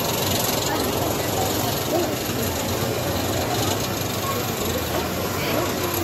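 Outdoor amusement-park ambience: indistinct voices of people nearby over a steady low hum and hiss, while a drop-tower ride's gondola climbs.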